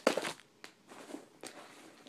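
Packing material crunching and rustling as a bottle is pulled out of a box of packing peanuts: a loud burst of crunching at the start, then a few faint clicks.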